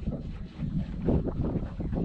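Wind buffeting the microphone: an uneven low rumble with small gusts.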